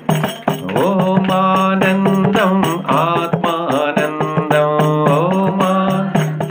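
A man singing a devotional chant in a bending melody over a steady low drone, with hand-struck percussion keeping a rhythm.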